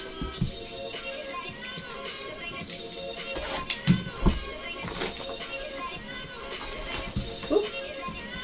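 Background music, over which a cardboard trading-card box is handled and its plastic shrink wrap torn off: a few sharp crackles and knocks, the loudest a pair of thumps about four seconds in.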